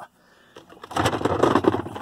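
A Worx Landroid robot mower pulled by hand out of its charging station, its tracked wheels rolling and rumbling over the base plate, starting about a second in.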